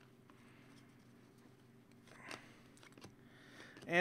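Quiet handling of trading cards by hand: a few faint clicks and a soft swipe about two seconds in as cards are slid and flipped through, over a low steady hum.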